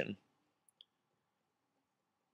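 Near silence with one faint, brief click a little under a second in.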